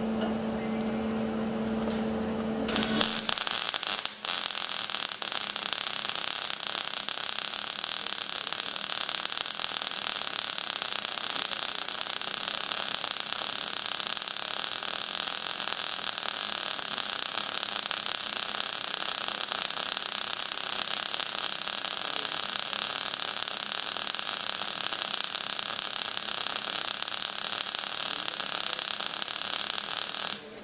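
Longevity MIGweld 140 wire-feed welder: a steady hum for about three seconds, then the welding arc crackles steadily as the wire burns into the steel, with one brief break in the arc about four seconds in.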